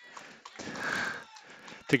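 A man breathing close into the microphone, with one noisy sniff-like breath from about half a second to a second and a half in, just after a laugh. A spoken word starts at the very end.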